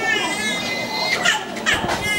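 High-pitched voices crying out in long wavering calls over the hubbub of a crowd, with a few sharp knocks late on.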